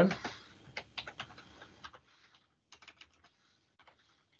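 Computer keyboard keys clicking in short, irregular runs, heard faintly over a video-call microphone, thinning out after about two seconds.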